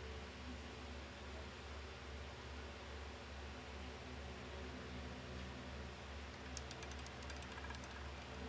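Steady low electrical hum with hiss, and a quick run of about ten light clicks near the end.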